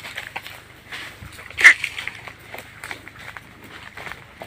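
Light rustling and scattered crunching clicks of movement over dry leaf litter and grass, with one short, sharp, louder sound about a second and a half in.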